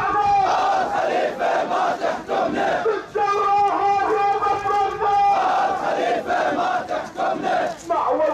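Large crowd of protest marchers chanting slogans in unison, loud and rhythmic, with a long held note in the middle.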